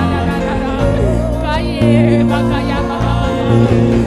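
Gospel worship song played live: a voice singing a wavering melody over instrumental backing with sustained bass notes.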